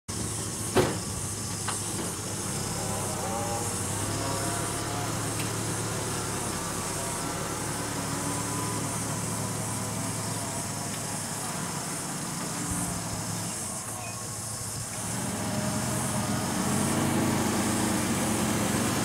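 Toyota pickup truck's engine running steadily as the truck is slowly manoeuvred into place, growing louder over the last few seconds. A single sharp knock sounds about a second in.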